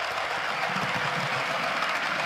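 Bachmann Class 350 model electric multiple unit running past on the track: a steady whirr of its small electric motor and wheels running on the rails.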